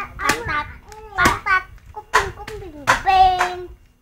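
Young children clapping their hands about once a second while chanting in high voices, with one long held note near the end.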